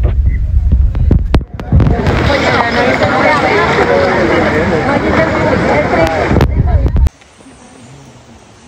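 Indistinct overlapping voices over a heavy low rumble with sharp crackling pops, the voices loudest in the middle, cutting off suddenly about seven seconds in.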